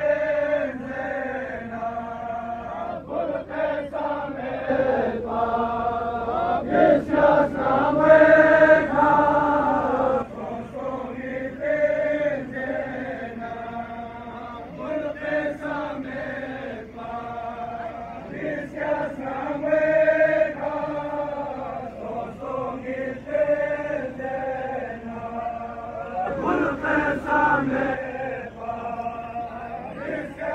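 Men's voices chanting a Balti noha, a Shia mourning lament, carried over a loudspeaker. It goes in long held phrases that rise and fall and repeat every few seconds without a break.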